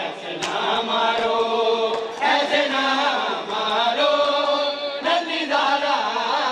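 A noha, a Shia mourning lament, chanted with long, drawn-out held lines.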